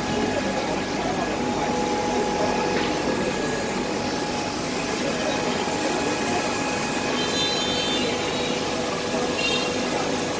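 Steady mechanical hum with a few constant tones, under indistinct background voices.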